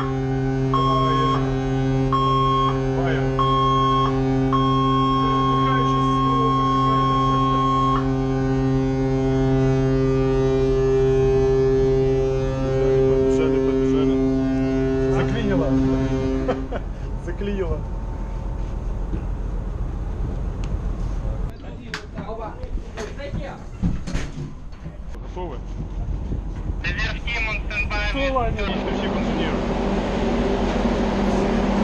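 A ship's whistle sounds one long, steady, low blast, the alarm for a fire drill. A higher tone beeps on and off at first and then holds, and both cut off suddenly about halfway through. Then come clatter and knocks of gear being handled, with indistinct voices.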